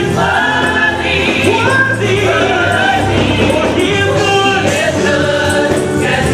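Live gospel praise team singing: a male lead voice with a choir of women's voices, over steady held low notes.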